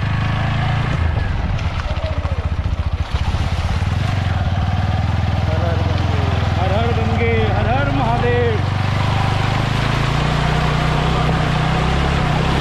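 TVS Apache 160 motorcycle's single-cylinder engine running at low revs as the bike rides through a shallow flooded river crossing, firing unevenly for the first few seconds and then running steadily, with water splashing off the front wheel. A voice calls out briefly about halfway through.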